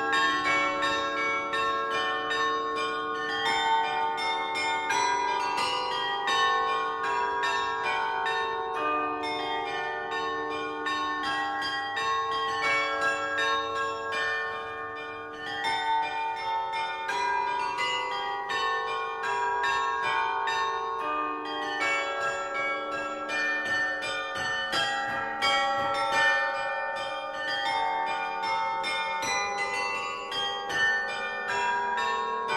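Restored historic Hemony carillon, its bronze bells played from the baton keyboard in a quick run of struck notes and chords that ring on and overlap, with a short lull about halfway through.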